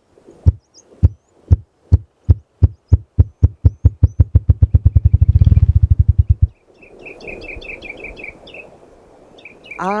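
Male ruffed grouse drumming with its wings on a log, its mating display: low thumps about two a second at first, speeding up into a fast whir that cuts off about six and a half seconds in, like an engine trying to turn over. A small bird's run of short chirps follows.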